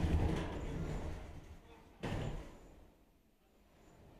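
Low hum from the two locked-together 3 lb combat robots' motors fading over the first second or two. A sudden knock about two seconds in then dies away to near quiet.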